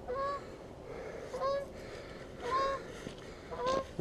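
Geese honking: four short honks about a second apart.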